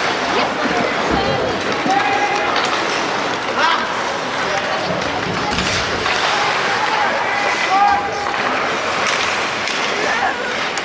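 Rink sound of ice hockey in play: skates scraping the ice, sharp clacks of sticks and puck, and players' short shouts ringing through the arena.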